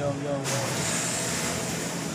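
Brief indistinct talking in the first half second, then a steady hiss of dining-room background noise with faint voices under it.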